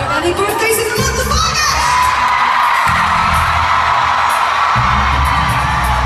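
Arena crowd screaming and cheering over loud live pop music, heard from within the audience. The music's heavy bass drops out briefly about every two seconds.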